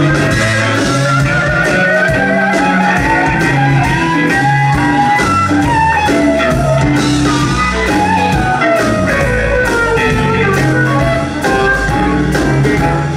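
Live band playing an instrumental break: electric guitars, bass and drum kit keeping a steady beat under a lead line of sliding, bending notes.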